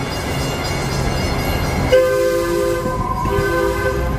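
DART Super Light Rail Vehicle 229 sounding its horn, a chord of several steady tones, in two blasts: the first about two seconds in, the second after a short break. Before the horn there is the rumble of the moving train.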